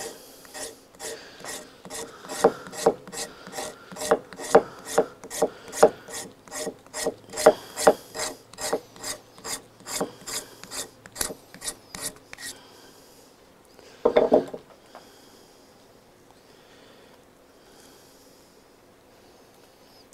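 Knife blade scraping fine shavings from a stick of fatwood in quick, even strokes, about three a second, stopping about twelve seconds in. A single short rub follows about two seconds later.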